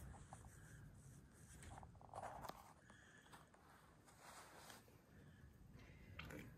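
Near silence with faint rustling and scuffing from handling in straw bedding, a few soft scrapes about two seconds in.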